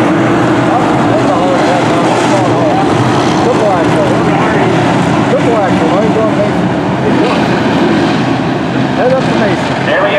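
A field of USRA Stock Cars racing on a dirt oval, their engines a loud, continuous mass of sound. Individual engines rise and fall in pitch as the cars lift and accelerate through the turns.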